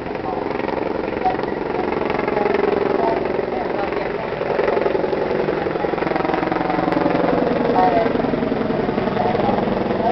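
The ferry's engine drones steadily, with indistinct passenger voices chattering over it.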